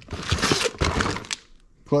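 Cardboard box and plastic parts bag rustling and crinkling, with small clicks, as a hand rummages in the box and pulls out a bagged part. It lasts about a second and a half, then stops.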